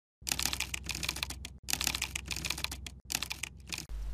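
Fast typing on a computer keyboard: a rapid run of key clicks in three stretches, with brief pauses about a second and a half in and three seconds in.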